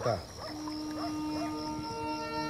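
Background film score coming in as one sustained low note, with higher held notes joining near the end, over a steady chorus of crickets.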